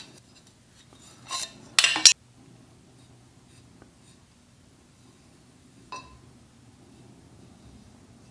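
Hand tools and a steel tube being handled on a metal jig: a short, loud metallic clatter about two seconds in, as of a metal speed square being set down, then a single light ringing metal clink near six seconds.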